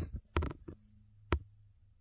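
A few short, sharp handling clicks, four or so spread across two seconds, as the glasses and the phone are moved by hand, over a faint low hum.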